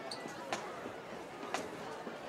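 Crowd chatter from the stands, with two sharp taps a second apart.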